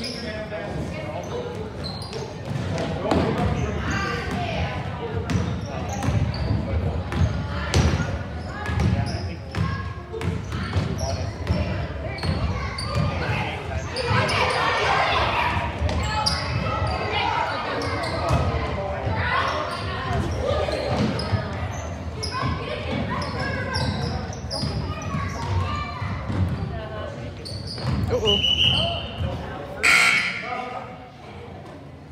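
Basketball bouncing and dribbling on a hardwood gym floor during a youth game, over spectators' and players' voices echoing in the gym. A brief high-pitched tone sounds near the end.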